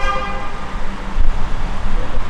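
Street traffic: a short vehicle horn toot at the start that fades within about a second, over a steady low rumble of traffic.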